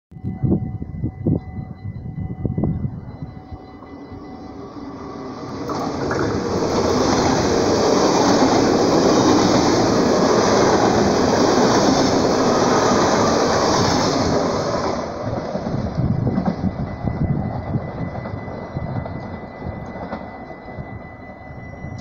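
NS VIRM double-deck electric multiple unit passing close by at speed: a rush of wheel and air noise swells in about five seconds in, stays loud for about eight seconds, then fades away as the train leaves.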